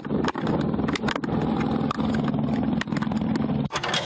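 Wind rushing and buffeting on a skydiver's onboard camera microphone during a parachute descent, a steady low rush broken by a few brief crackling dropouts.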